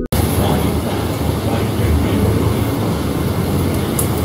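Steady rumble and hiss of a city bus's engine and running noise, heard from inside the bus.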